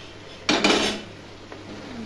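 A short clatter of metal kitchenware against a steel cooking pot, about half a second in and lasting about half a second.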